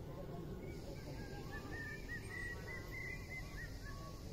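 A flock of birds calling, many short chirps overlapping from about a second in, over a low steady rumble.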